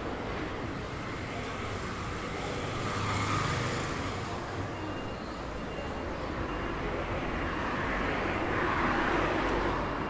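City street traffic: cars passing along the road, swelling twice, about three seconds in and again near the end, over a steady traffic hum.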